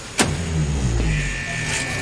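Factory assembly line being shut down, heard on a film soundtrack: a sharp clunk as the stop is thrown, then the line's heavy machinery running down in a low rumble that falls in pitch. A steady high tone comes in about a second in.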